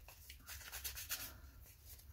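Faint rustling and rubbing of a thin strip of paper being handled, soft and uneven, a little stronger in the first second.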